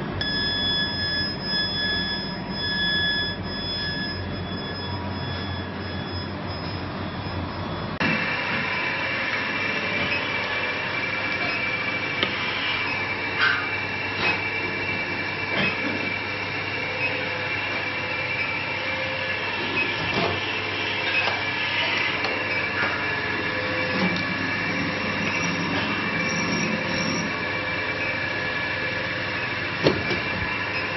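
Wire drawing machinery running steadily: a constant mechanical drone with several high whining tones. The tones change abruptly about 8 seconds in, and a few short knocks come through later.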